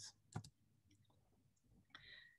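Near silence broken by two brief, faint clicks, one about half a second in and one near the end. They fit a computer mouse or key clicking to advance a presentation slide.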